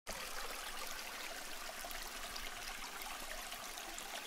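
Faint, steady trickling, fizzing noise, like running water, under an animated logo intro.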